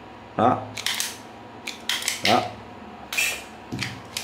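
Handheld spring-loaded automatic wire stripper (kìm chuốt dây điện) giving a few short, sharp clicks and snaps as its handles are squeezed and its jaws spring back open.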